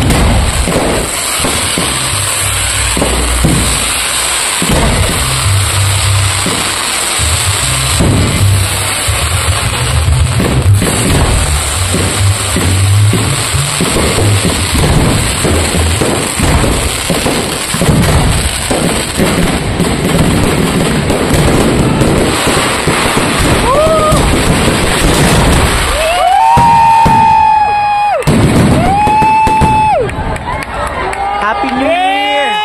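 Aerial fireworks finale: a dense, continuous barrage of shell bursts and crackle, with music playing underneath. Near the end, a few long rising calls sound over the bursts.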